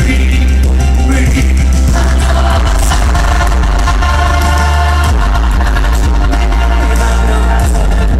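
Loud live pop song played by a band through a concert PA, with singing over a heavy, steady bass.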